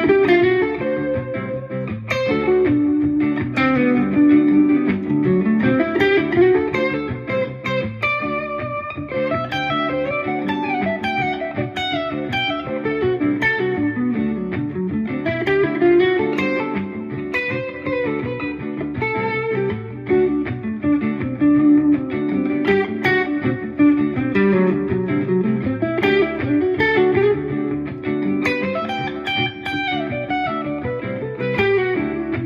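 Stratocaster-style electric guitar playing a single-note lead line in D Mixolydian, built from small three-note finger shapes joined by short slides. It plays over a sustained D groove.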